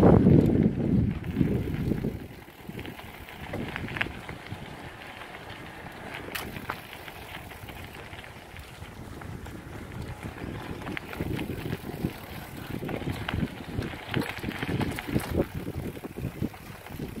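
Mountain bike riding along a gravel and dirt track: a steady tyre-on-gravel noise with scattered clicks and rattles from the bike. There is a heavier rumble on the microphone for the first two seconds, and the clatter grows busier near the end.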